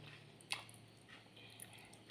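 Faint, soft squishing of cooked rice being mixed by hand on a plate, with one small sharp click about half a second in.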